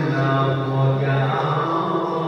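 A solo man's voice chanting in long, held melodic notes: Islamic religious recitation.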